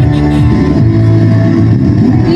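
Loud recorded music played through a PA sound system.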